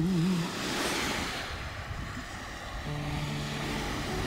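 The last sung note of a song fades out, leaving a steady rushing noise of sea surf. A low, held note comes in near the end.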